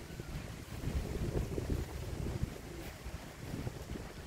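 Wind on the microphone: an uneven low buffeting noise with no other clear sound.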